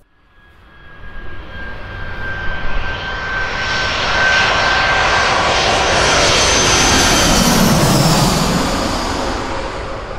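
Twin-engine jet airliner with its landing gear down passing low overhead. The engine noise swells from quiet over the first few seconds and is loudest around six to eight seconds in. A high whine drops in pitch as the plane goes past, and the noise then eases a little as it moves away.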